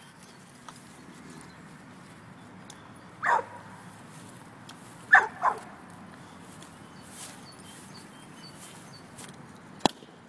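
Dog barking while chasing a balloon: one bark about three seconds in, then two quick barks around five seconds. Near the end comes a single sharp pop, the loudest sound, as the balloon bursts.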